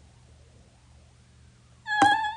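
Faint room hum, then near the end a short high-pitched cry that falls slightly in pitch.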